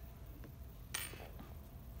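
One sharp clack of wooden Jenga blocks about a second in, with a couple of fainter taps, as a block is taken off the top of the tower.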